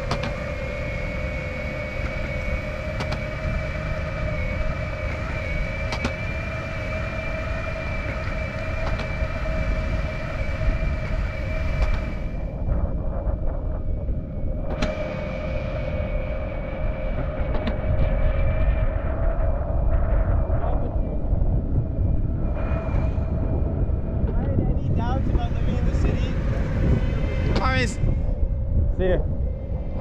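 Electric skateboard motors whining at a steady pitch while cruising, over a low rumble of wheels rolling on concrete. Voices come in briefly near the end.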